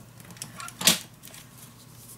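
A clear acrylic ruler is laid down on cardstock: one short, sharp clack a little under a second in, with a few fainter light ticks and paper rustles around it.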